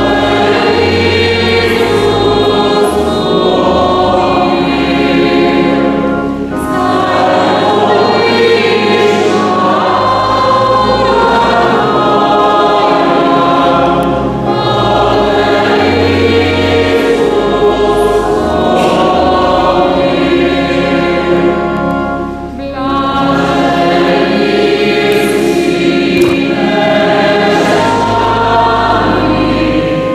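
A mixed choir of men and women singing a hymn with organ accompaniment, the organ holding long low bass notes under the voices. The singing moves in phrases with brief breaths between them, about every eight seconds.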